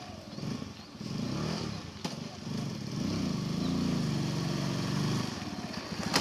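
A small motorcycle engine running as the bike is ridden along, its pitch wavering up and down and louder in the second half. A single sharp click about two seconds in.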